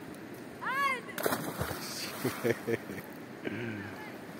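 A short shout that rises and falls in pitch, then about a second in a sharp splash as a child dives into a river, with water churning after it.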